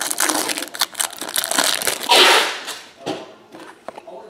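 Plastic trading card pack wrapper being torn open and crinkled by hand, a dense crackle with a louder rip about two seconds in.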